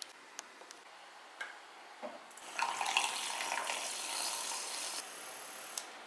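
Milk poured into a glass measuring cup, a steady liquid pour lasting about two and a half seconds, after a few light clicks and taps.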